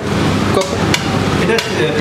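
Metal paddle knocking and scraping against a stainless-steel tub of Turkish ice cream as it is worked, with sharp metallic knocks.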